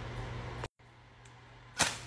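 A long wooden match struck once against the matchbox striker near the end, a short, sharp scratch as it flares alight. Before it, only a faint steady hum, broken by a moment of total silence.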